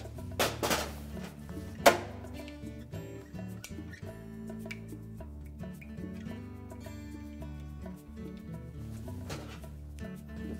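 Background music, with a few sharp clicks in the first two seconds, the loudest about two seconds in, as push-on spade terminals are taken off the old surface burner switch and pushed onto the new one.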